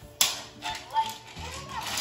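Ricky Zoom Lights & Sounds toy motorcycle playing short electronic sound effects and music from its small speaker, with a sharp knock just after the start.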